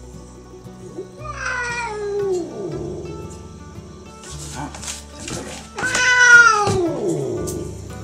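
Ginger cat meowing twice, each a long call that falls in pitch, the second louder, begging to be fed. Background music plays underneath.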